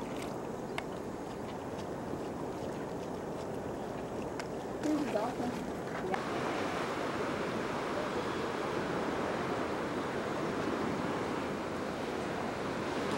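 Steady wash of ocean surf with wind on the microphone, the noise growing fuller about halfway through.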